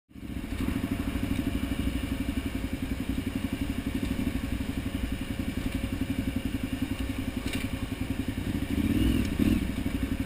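KTM 990 Adventure's V-twin engine running at low, steady revs as the motorcycle crawls over a rocky trail, with a brief rise in revs about nine seconds in.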